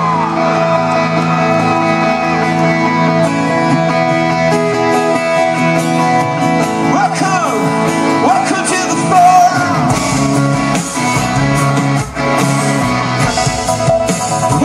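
Live rock band heard from the crowd through a concert PA: electric guitars and sung vocals, with the bass and drums coming in fuller about ten seconds in.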